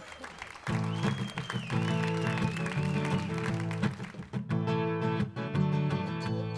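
Acoustic string band of guitar, banjo and upright bass playing sustained chords, coming in about half a second in after a brief lull, with a high wavering tone above it for a couple of seconds.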